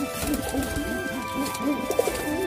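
Domestic pigeon cooing: a rapid run of short, low coos, several a second, over background music with steady held notes.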